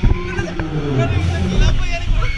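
A man's long, loud yell that falls in pitch over about a second and a half, on a swinging pirate ship fairground ride, over a low rumble of wind on the microphone.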